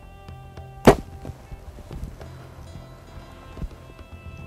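A compound bow released once about a second in: a single sharp, loud snap of the string and limbs as the arrow is shot, over background music. A fainter knock follows near the end.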